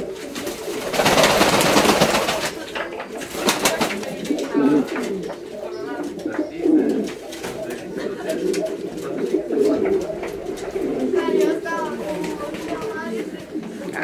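Fancy domestic pigeons cooing continuously in a loft, with a loud burst of wing flapping about a second in and scattered clicks from birds moving on the perches.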